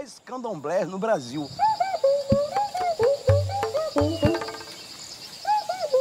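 A man's voice briefly at the start, then short rising-and-falling animal calls repeating irregularly over a steady high insect trill.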